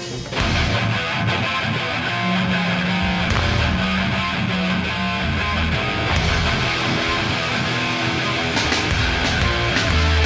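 Live hardcore band launching into a song: loud, dense electric guitars and drums that start abruptly about half a second in and keep going.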